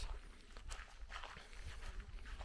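Footsteps on a dry grass path: a few soft, irregular steps.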